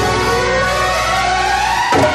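Instrumental passage of a 1990s Bollywood film song: a held note sweeps steadily upward in pitch over about two seconds, with other sustained notes under it, before the rhythmic beat comes back in.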